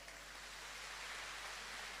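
Faint, steady hiss of background noise with no distinct event.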